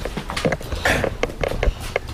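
Irregular rustling and clicking handling noise as the body-worn camera shifts and rubs against the wearer's shirt, with a faint murmur of voice.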